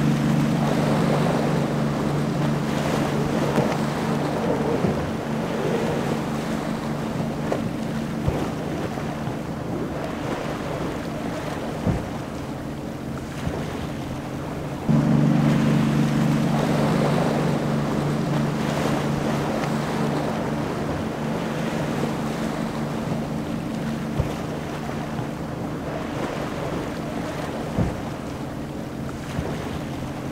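Multi-engine Mercury outboard boats running at speed through the inlet: a steady, even-pitched outboard drone mixed with hull spray and wind on the microphone. Halfway through the drone jumps louder as a second boat takes over, then fades slowly as it runs past; a few brief thumps sound as hulls hit the chop.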